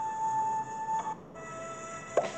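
Background music from a children's Bible-story app: a long held note that stops a little past a second in, followed by quieter, lower notes.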